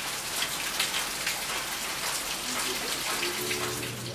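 Steady rain falling: a dense, even hiss of many small drops.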